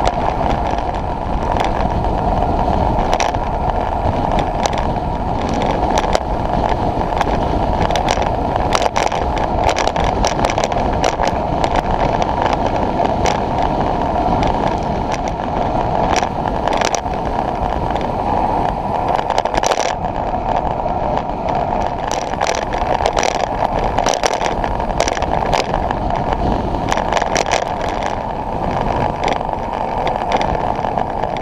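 Wind rushing over the microphone of a camera on a moving road bike: a loud, steady noise, with frequent short knocks as the road jolts the camera.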